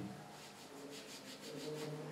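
A hand rubbing a wax strip down onto skin: a faint, steady rubbing. A faint low hum comes in during the second half.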